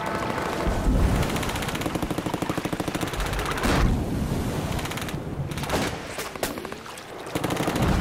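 Surf washing over a camera at the waterline, the churning water on the housing giving a rapid crackle of clicks and pops that dips for a moment near the end.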